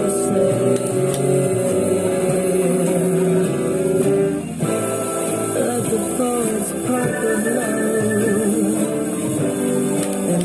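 Song with a female singer holding long notes over guitar accompaniment. The voice dips briefly about halfway through, then moves through more ornamented, wavering notes.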